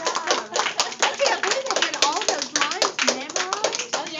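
Audience of children and adults applauding: many irregular hand claps with voices chattering over them.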